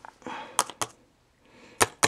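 Sharp taps of a thin plastic deli-cup lid against a plastic cup as tiny mantis nymphs are knocked off it into the cup: a few separate clicks, two close together past the middle and one near the end.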